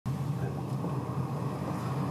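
Steady low rumble of background room noise, without distinct events.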